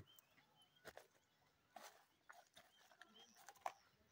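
Near silence: faint outdoor ambience with a few soft scattered clicks.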